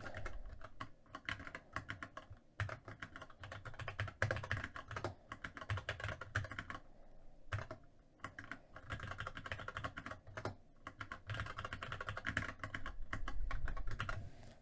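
Typing on a computer keyboard: fast, irregular bursts of keystrokes with short pauses between them.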